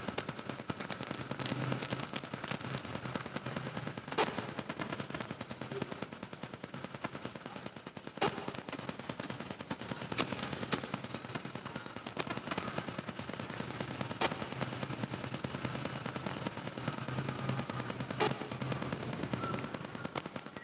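Faint, dense, irregular crackling with a few sharper clicks, over a low steady hum.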